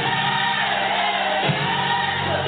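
Gospel music with a choir singing long, held notes over a steady bass.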